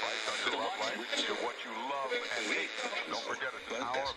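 A voice filtered thin like an old radio broadcast, part of a music track, with the bass cut out; the low end comes back in right at the end.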